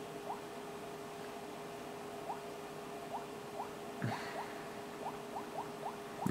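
Faint, short rising squeaks of a fingertip on a glass touchscreen, about a dozen, coming faster in the last two seconds, over a faint steady hum. There is one brief soft noise about four seconds in.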